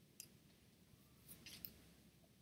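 Near silence with a few faint, sharp clicks of a computer mouse: one just after the start and three more close together past the middle.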